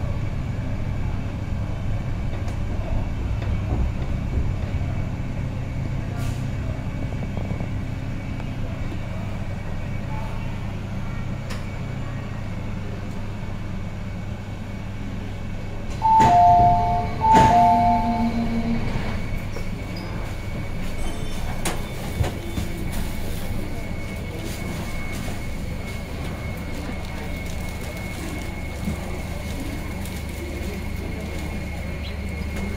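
A Metro Cammell electric multiple-unit train, heard from inside the carriage, rumbling as it slows to a stop at a station platform. About halfway through, a two-note electronic chime sounds twice, loud against the quieter rumble of the stopped train.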